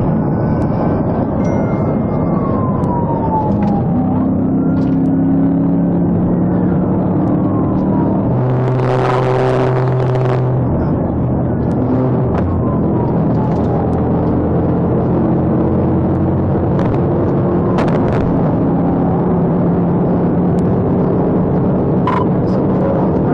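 Police cruiser driving at highway speed in a pursuit, heard from inside the car: steady loud road and engine noise with the siren wailing in slow sweeps. A louder two-second blast with a steady tone comes about nine seconds in.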